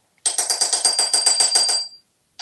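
Metal spoon rattled rapidly against a porcelain sink basin by an African grey parrot's beak, a fast run of about eight to ten clinks a second, with the spoon ringing throughout. The rattling stops just before the end.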